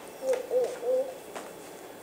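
A child's voice making three short, soft "uh" sounds in the first second, sounding out a letter sound.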